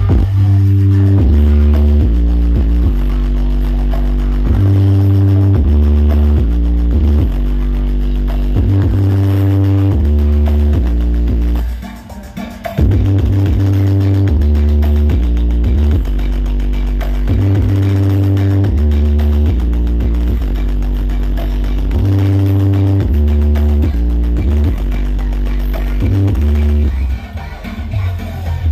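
Very loud electronic dance music with a heavy, booming bass line, played through a stacked 'horeg' sound system of large speaker cabinets. The music cuts out for about a second near the middle, then comes back in.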